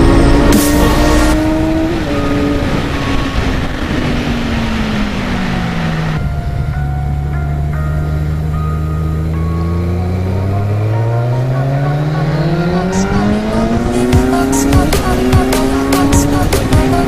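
Motorcycle engine running under way: its pitch sinks slowly as revs come off over the first several seconds, holds low for a few seconds, then climbs steadily as the rider gets back on the throttle. Wind rush on the microphone is heard in the first part.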